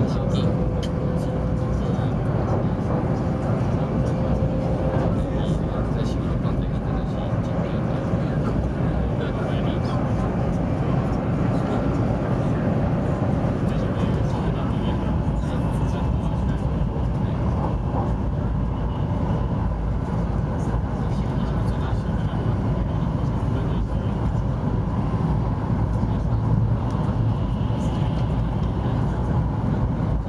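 Steady rumble and rushing noise inside the passenger cabin of a Taiwan High Speed Rail 700T train cruising at high speed, with a faint thin hum in the first few seconds.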